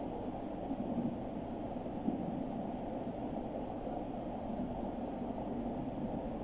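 Steady low background noise of an indoor show-jumping arena, an even hiss and murmur, with faint knocks about one and two seconds in.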